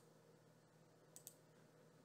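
Near silence with a faint computer mouse button clicking twice in quick succession a little over a second in.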